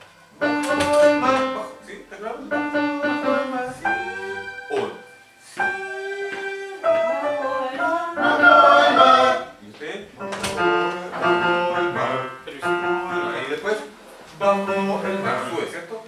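Electronic keyboard played with a piano sound, a man singing the melody along with it in short phrases with brief breaks between them.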